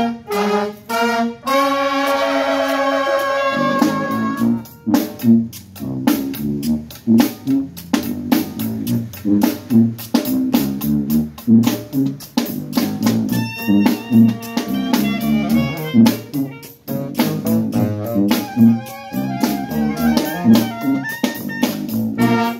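A street brass band playing live together: sousaphone, trumpets, trombone, saxophone, clarinet and a bass drum. It opens with a few short stabbed notes and a held chord, then the drums come in with a steady beat about four seconds in under the horns.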